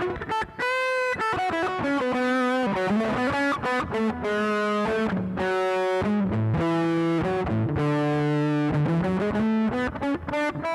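Electric guitar played through the Zoom G1 multi-effects pedal's Matchless Hot Box overdrive emulation: a string of held, overdriven notes and chords, with a slide up in pitch near the end.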